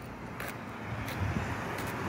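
Road traffic noise: a passing vehicle's steady hum, growing gradually louder, with a couple of faint clicks.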